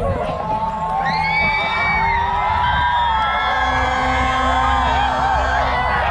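An audience crowd cheering, with many voices shouting and whooping at once over steady music in the background.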